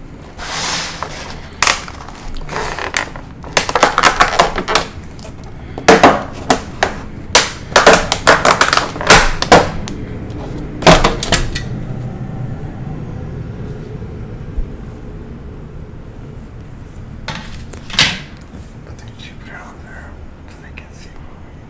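Close-miked handling of takeout sushi packaging: clustered clicks, taps and crinkles in bursts for several seconds, easing into a quieter stretch with a couple of later taps.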